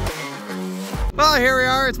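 Electronic intro theme music with heavy low notes, stopping about a second in, followed by a voice speaking.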